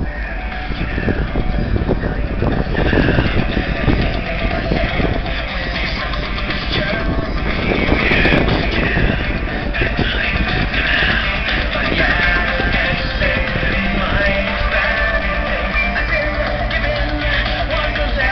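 Loud rock music with guitar, played through a pickup truck's Alpine car stereo (Alpine amplifiers driving door coaxials and A-pillar tweeters) turned up to show off its mids and highs, heard from across an open parking lot.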